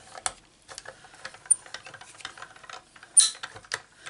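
Small hand-cranked die-cutting machine being cranked, the cutting-plate sandwich with a circle die rolling through its rollers with a run of small irregular clicks and creaks, and one louder sharp click a little after three seconds in.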